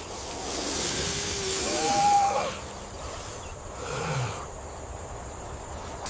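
Snake hiss sound effect: a long breathy hiss lasting about two and a half seconds, with a short strained, cry-like voice about two seconds in. After that it dies down to a quieter background with a faint short sound about four seconds in.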